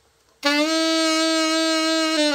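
Marcus AS-300 alto saxophone played as a play test after a full overhaul: one long held note that starts about half a second in.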